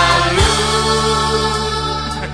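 Indonesian pop song recording: a long held sung note over bass and drums.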